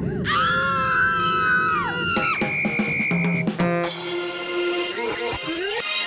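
A long, wavering scream sound effect that drops away after about two seconds, marking the internet connection cutting out, followed by a held high beep, a quick drum roll and then music with a beat.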